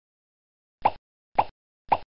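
Three short cartoon pop sound effects about half a second apart, each dropping quickly in pitch, the pops of a logo intro animation as coloured circles appear on screen.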